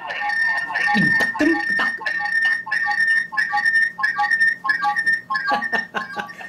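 Electronic tones echoing back and forth between the Meco WiFi camera's speaker and its phone app, an audio feedback loop that pulses about three times a second and is called 'very nice music'. A short voice sound comes about a second in.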